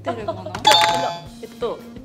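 A short, bright chime sound effect rings about two-thirds of a second in and fades within half a second, over soft background music and brief murmured voices.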